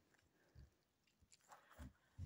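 Near silence, with a few faint soft bumps of handling, one about half a second in and two near the end.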